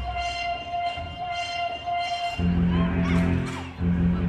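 Music for a hip hop dance routine: the beat drops out under one held high note for about two seconds, then a heavy bass comes back in with short sliding sound effects over it.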